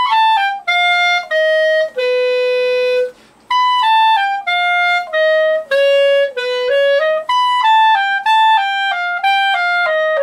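Solo clarinet playing a legato passage of descending notes. The first run ends on a held low note, the counted C sharp, and after a short breath a second descending run follows.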